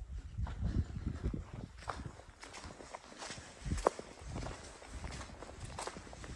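Footsteps walking over fallen leaves and a wet path: an irregular run of soft crunches, with one sharper click a little before four seconds in, over a low rumble.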